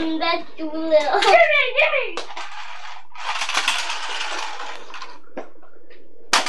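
A small toy car whirring across a tiled floor for about two seconds, after a couple of clicks.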